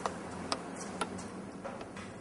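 Three sharp clicks about half a second apart, then two fainter ones near the end, over a low steady hiss.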